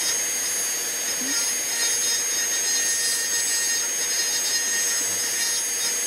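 High-speed rotary tool spinning a diamond burr, grinding down the carved scales on a wooden rifle stock. It gives a steady high-pitched whine that does not change in speed.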